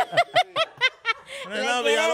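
A person laughing: a quick run of about six short 'ha' pulses, each dropping in pitch, that stops about a second in; a drawn-out voice follows near the end.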